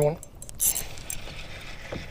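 A brief rustle of handling with a few light mechanical clicks from a spinning rod and reel being grabbed as a crappie bites.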